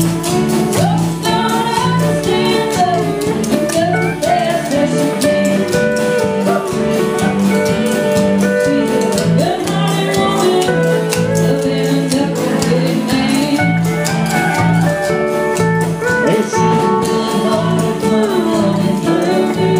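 Band music with a singer and guitar over a steady beat.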